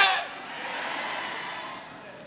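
A man's shouted preaching through a handheld microphone breaks off right at the start. A steady, faint background hiss follows for about a second and a half.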